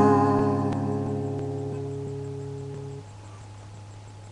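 Acoustic guitar's final strummed chord ringing out and slowly fading. About three seconds in, most of the notes are cut off, leaving a faint low tone.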